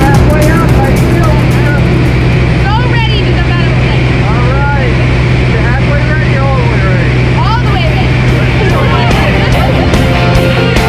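Light aircraft's propeller engine droning steadily inside the cabin during the climb.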